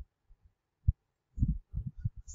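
Dull low thumps of handling noise on the microphone or desk: a single sharp one about a second in, then a quick run of them in the last half-second.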